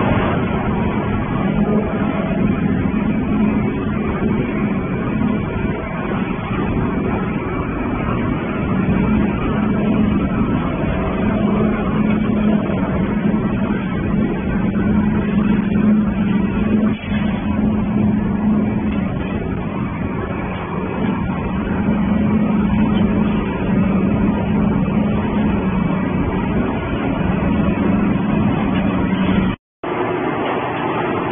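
Industrial waste shredding line running: a steady machine drone with a strong low hum over continuous grinding and conveyor noise, with one brief dip about 17 seconds in.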